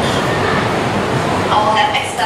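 Steady rushing background noise in a classroom, picked up through a headset microphone, with a voice starting about one and a half seconds in.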